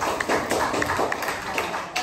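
Audience applauding: many hands clapping in a dense patter, with voices talking underneath.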